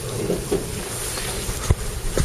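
Steady background noise of a crowded indoor hall, with one sharp knock about one and a half seconds in.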